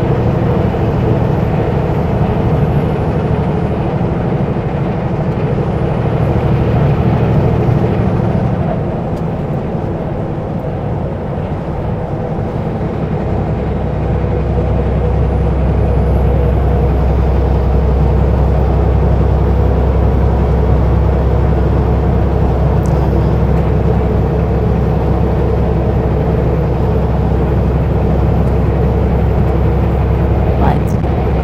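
Kenworth W900L semi truck's diesel engine running steadily at road speed, with tyre and road noise. About ten seconds in, the sound dips briefly, then settles into a deeper, louder drone.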